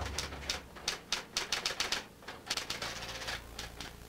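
Typewriter keys striking in an irregular run of sharp clicks that stops shortly before the end.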